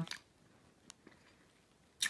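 Faint chewing of a Nerds Rope: a few soft crunches of its small crunchy candy pebbles, one a little louder about a second in.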